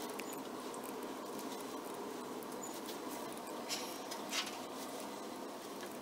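Quiet room tone, a steady low hiss, with two brief faint scratchy sounds a little past the middle.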